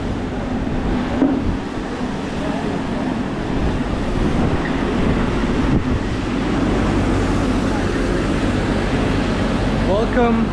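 Busy pedestrian street ambience: a steady wash of crowd chatter under a steady low engine hum from motor vehicles working in the street.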